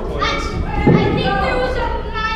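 High-pitched voices chattering, with a dull thud about a second in.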